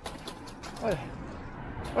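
Low, steady city street background noise with a brief voice sound just under a second in.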